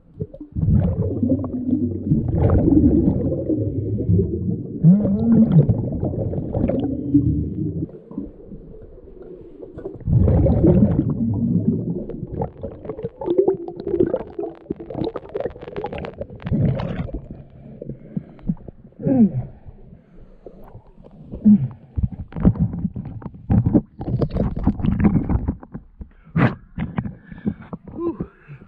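Exhaled air bubbling out of a scuba regulator, heard muffled through an underwater camera: a long loud stretch of bubbling in the first several seconds, another at about ten seconds in, then shorter bursts with quieter gaps between.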